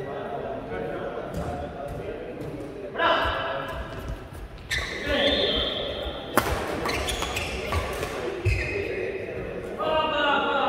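Badminton racket strikes on a shuttlecock, a few sharp cracks with the loudest a little after six seconds in, among players' voices talking and calling.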